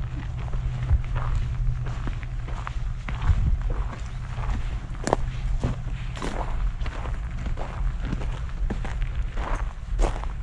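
Footsteps walking on a gravelly dirt path, an irregular run of short crunching steps, over a steady low rumble.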